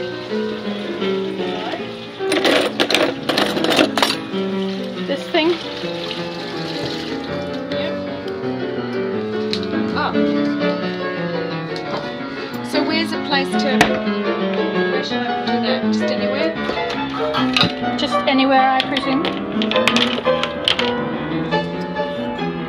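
Classical solo piano music playing steadily, with a few sharp clatters about two to four seconds in.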